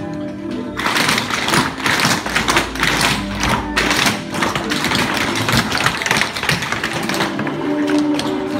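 Tap shoes of a group of dancers clattering on a hardwood floor in a rapid, dense run of taps. It starts about a second in and stops shortly before the end, over recorded music.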